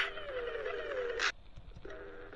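Sound effect over a title card: a sudden hiss, then a wavering tone that falls in pitch for just over a second and ends in another short hiss.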